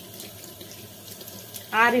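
Tap water running steadily from a faucet into a sink basin, splashing over a hand being rinsed under the stream.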